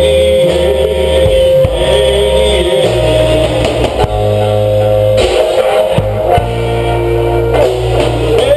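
Four-piece rock band playing live: two electric guitars, bass guitar and drums in an instrumental passage without vocals. Guitars hold notes over a bass line that moves to a new note every second or so.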